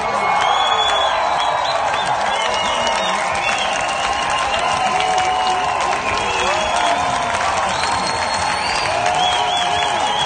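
A crowd applauding and cheering, with dense steady clapping and many whoops and shouts.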